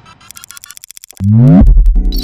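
Electronic logo-intro sound effect: a fast run of quick digital ticks, then a sweeping synth tone that drops into a loud, deep bass hit about a second and a half in, with a few sharp clicks on top.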